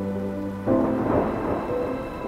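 Electronic ambient background music holding a low chord. About two-thirds of a second in, a loud rushing noise swell like thunder and rain comes in over the music and then fades.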